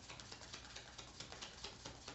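A deck of message cards being shuffled by hand: a soft, irregular run of quick card flicks and taps, several a second.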